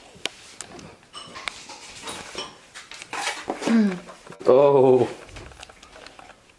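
Wordless vocal calls: a short falling call a little past halfway, then a louder, longer wavering call about a second before the end, with small clicks around them.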